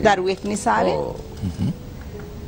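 A person speaking a short phrase in Sinhala, then a brief low voiced sound about a second and a half in.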